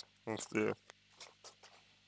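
A man's voice saying a short, unrecognised word or sound, followed by a few faint ticks.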